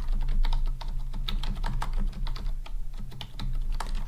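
Typing on a computer keyboard: a quick, continuous run of key clicks over a steady low hum.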